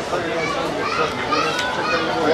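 Overlapping children's voices chattering and calling out over one another, with no single clear speaker.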